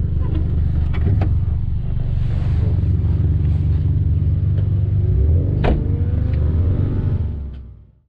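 Volkswagen car engine idling, heard inside the cabin as a steady low rumble. A few sharp clicks come over it, the loudest a little before six seconds in, and the sound fades out at the very end.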